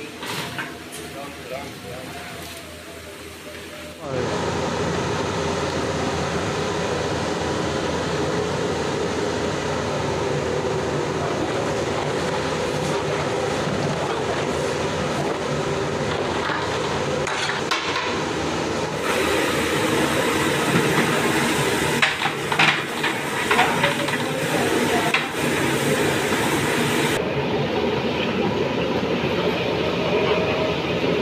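A large aluminium pot of diced potatoes and masala cooking over high heat, giving a steady, loud hiss from about four seconds in. A long metal ladle stirring the pot scrapes and knocks against its sides, most often in the second half.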